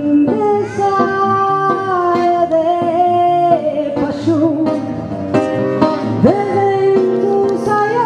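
A woman singing a milonga in long held notes, with a slide up about six seconds in, over a plucked acoustic guitar accompaniment.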